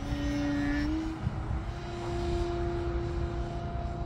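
Electric motor and propeller of an E-flite Carbon-Z Yak 54 radio-controlled aerobatic plane in flight: a steady whine that rises in pitch during the first second as the throttle comes up, then holds.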